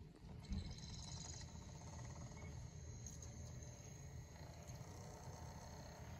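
Faint whir and thin high whine of a Sylvania portable DVD player's disc drive spinning up and reading a disc, with a soft knock about half a second in.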